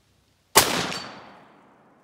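A single rifle shot from a Rock Island Arsenal M1903 bolt-action rifle in .30-06: one sharp crack about half a second in that dies away over about a second of echo. Just after, a faint high ring from the bullet striking a steel plate at 100 yards.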